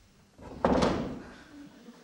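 Knocks from stage gear being handled: a small knock about half a second in, then a louder thud that rings out and fades, with a few fainter knocks after.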